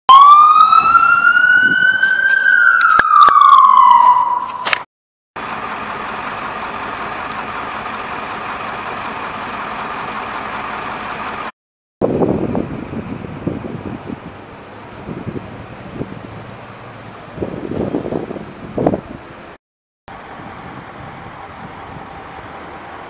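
An emergency vehicle's siren wails loudly for the first five seconds, sweeping up and then back down in pitch. After it cuts off, steady street noise follows, with a few short irregular louder sounds later on.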